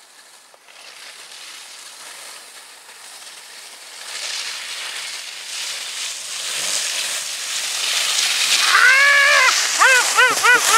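Skis scraping and hissing over packed snow, growing louder as a skier comes close. Near the end a person calls out once with a rising-then-falling whoop.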